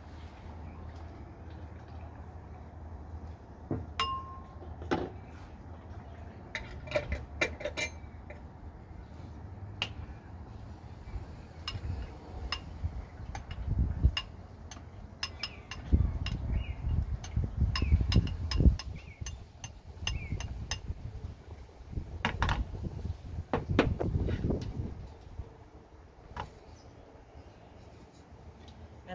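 Metal spoon clinking and tapping against glass jars and a glass bowl as dry spices are spooned out, in irregular clinks with one short glassy ring about four seconds in. Later come heavier knocks and handling noise as the glass bowl is tipped and tapped out over a funnel.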